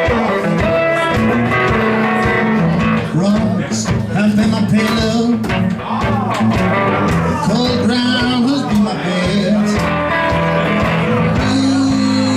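A live solo performance of a song: a guitar played with a steady strummed rhythm and a voice singing along.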